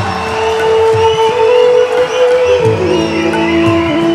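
A live ghazal ensemble playing an instrumental passage: a long held note that steps down to a lower one about two-thirds of the way through, over steady lower tones, with sliding melodic lines higher up.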